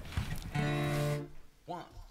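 A band's instruments sounding briefly before a song starts: an acoustic guitar strum and one steady held note lasting under a second, then a voice beginning the count-in near the end.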